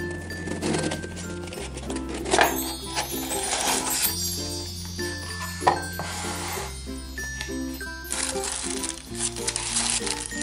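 Light, cheerful instrumental background music with a steady repeating bass line, and a few short bursts of rustling as a cardboard gift box is opened and tissue paper is handled.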